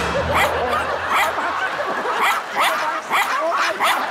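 A Yorkshire Terrier yapping over and over, a quick run of short, sharp yaps about two or three a second.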